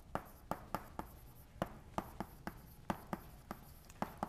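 Chalk writing on a blackboard: a faint, irregular run of sharp taps and short scrapes as words are written.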